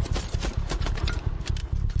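Film gunfire: a rapid, uneven string of shots, several a second, over a steady low rumble.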